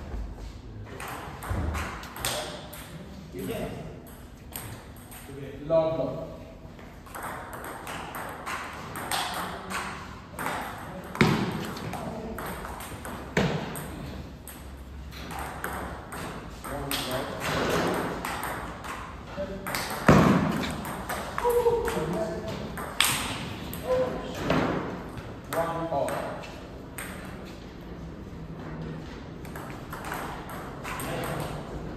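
Table tennis rallies: the ball clicking back and forth off the bats and the table in quick, repeated strikes.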